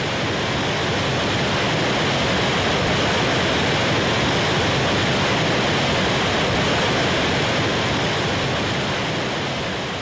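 Rushing water of a waterfall, a steady even rush with no other sound that swells slightly and eases off near the end.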